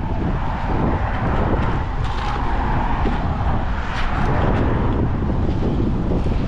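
Steady low rumble of wind on the microphone, with a few faint clicks about two and four seconds in.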